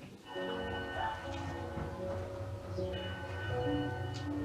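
Background music of sustained instrumental notes that change every second or so.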